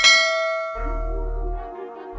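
A bell-like chime sound effect, from the animated subscribe button's notification bell, rings out once at the start and fades within about a second, over background music with a steady low bass line.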